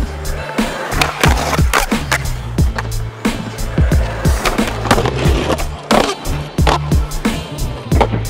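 Skateboard wheels rolling on a concrete skatepark surface, under background music with a steady beat.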